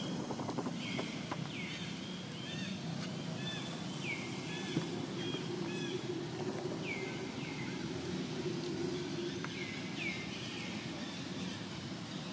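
Birds calling with short, repeated downward-sliding chirps every second or few, over a steady low background hum.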